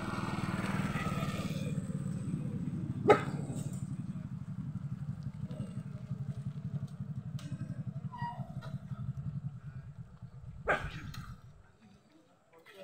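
A motorcycle engine idling steadily, fading out near the end, with two sharp clicks, one about three seconds in and one near the end.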